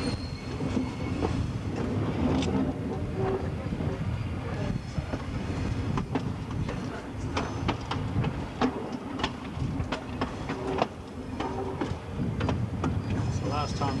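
Train running slowly along jointed track: a steady low rumble with irregular clicks and knocks as the wheels pass over the rail joints.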